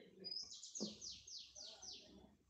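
A bird calling faintly: a quick run of about six high notes, each falling in pitch, about four a second.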